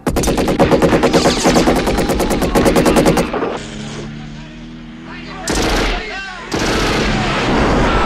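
Film soundtrack: a long burst of automatic assault-rifle fire, rapid and even, lasting about three seconds. After a quieter stretch with music, a rocket launcher fires and a large explosion goes off about six and a half seconds in, with a rumble that keeps going.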